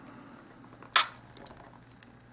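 Quiet handling of a plastic acrylic paint bottle held over aluminium foil: one short sharp tap about a second in, then a few faint ticks.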